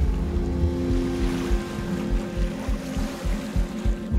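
Sea water rumbling and washing, heavy in the low end with irregular surges, under a sustained musical drone of steady tones.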